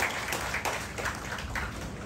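An audience clapping, a round of applause with dense, irregular hand claps that eases slightly toward the end.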